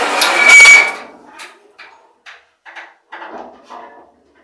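Steel truck fender being moved and handled: a loud metallic scrape and clatter with a brief ringing tone for about the first second, then lighter knocks and rattles.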